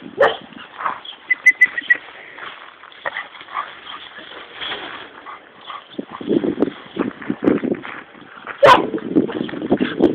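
A small dog barking in short bursts, with some whimpering. There is a sharp knock near the end.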